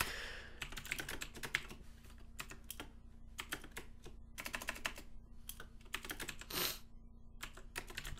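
Computer keyboard typing: quick runs of keystrokes broken by short pauses.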